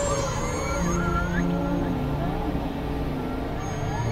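Experimental electronic noise music: a dense low rumble under held low drone tones, with short synthesized pitches gliding up and down above it.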